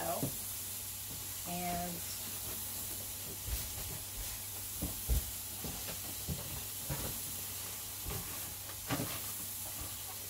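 Cardboard box and packing being handled during an unboxing: scattered rustles and light knocks, over a steady background hiss and hum. A short hum from a voice comes about a second and a half in.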